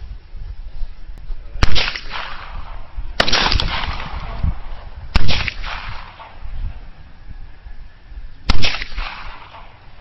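Four pistol shots fired one at a time at uneven intervals, each a sharp crack followed by a short echoing tail.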